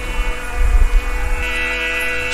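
A steady held chord of several sustained tones from the bhajan's accompanying instrument, over a low rumble.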